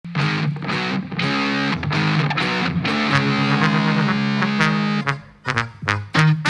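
A live band's instrumental intro: sustained full chords for about five seconds, then a few short, separate stabs near the end.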